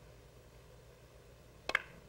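Sharp clicks of snooker balls, two in quick succession about a second and a half in, as the cue ball strikes the pack of reds, heard over faint arena hush.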